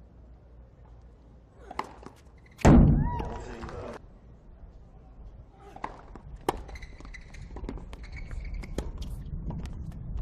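Tennis ball struck by rackets on a hard court: a serve and a short rally, with sharp hits about a second apart and shoe squeaks between them. A loud thump comes about three seconds in, before the point starts.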